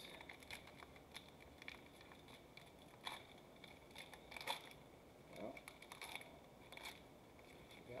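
Foil wrapper of a football trading-card hobby pack crinkling and tearing as it is pulled open by hand, in faint scattered crackles.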